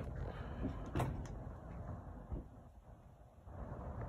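Faint handling noise from a phone being moved, with a few light knocks, the clearest about a second in, over a low steady rumble.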